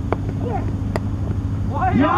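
A single sharp crack of a cricket bat striking the ball about a second in, over a steady low hum. A man's shout starts just before the end.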